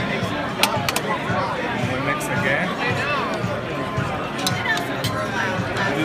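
Busy restaurant din of chattering voices and background music, with a few light clinks of metal spoons against a ceramic plate as the steak tartare is mixed.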